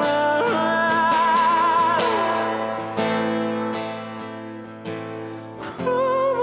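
A man singing over his own strummed acoustic guitar: a held, wavering note that slides down about two seconds in, then the guitar carries on, growing quieter, until the voice comes back at the very end.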